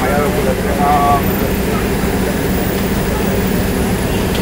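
Steady low drone of a train's diesel locomotive, with a voice calling out briefly in the first second.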